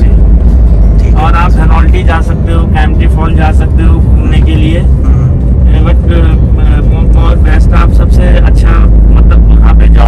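Inside a moving Suzuki car: a loud, steady low rumble of engine and road noise in the cabin, with voices talking over it at times.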